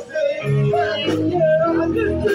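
Live rock band playing through a PA: electric guitars over bass and drums, with a high, wavering melody line and cymbal crashes.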